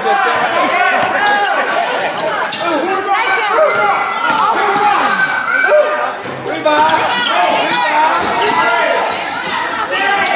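A basketball bouncing on a hardwood gym floor as it is dribbled up the court, with repeated sharp strikes. Voices call out in the echoing gym throughout.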